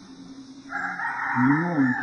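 A rooster crowing in the background: one crow of a little over a second, starting just under a second in, under a single spoken word from a man.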